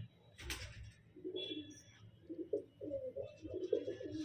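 Domestic pigeons cooing softly in a loft, a run of short low coos from about a second in, after a brief click about half a second in.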